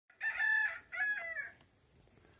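A rooster crowing: two loud, pitched phrases close together, over by about a second and a half in.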